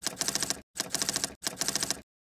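Typing sound effect: rapid keystroke clicks in three bursts of about half a second each, separated by short pauses, as on-screen text is typed out.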